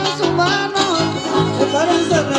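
Son huasteco trio playing an instrumental passage: a violin carries a sliding, ornamented melody over the steady strumming of a jarana huasteca and a huapanguera.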